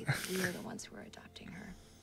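Faint, whispery speech from a person's voice, fading away toward the end.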